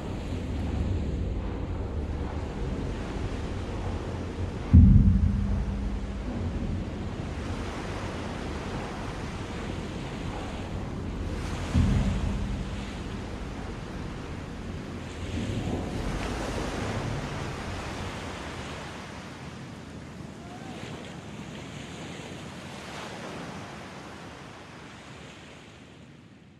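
Wind and surf noise with two heavy crashes, about five and twelve seconds in, each followed by a rumble and a short low ringing: steel sections of a beached ship collapsing as it is broken up. The sound fades out near the end.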